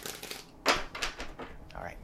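Tarot cards being handled at the end of a shuffle: a few short, sharp card clicks and taps as the deck is brought together and squared, the loudest about two-thirds of a second in.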